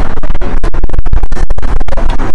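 Loud, dense scratchy rustling right at the microphone, broken by many short irregular gaps.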